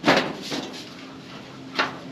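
A corrugated metal roofing sheet banging against a wooden frame as it is pushed into place by hand. There is a loud bang right at the start that rings off, and a second, sharper one near the end.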